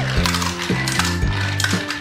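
Small toy cars clattering down the zigzag ramps of a wooden ramp-racer toy, a quick run of light clacks as they drop from track to track, over background music.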